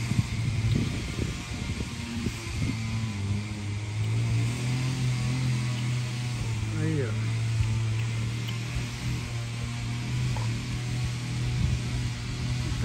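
An engine running steadily as a low, even drone, with a couple of brief voice-like sounds over it.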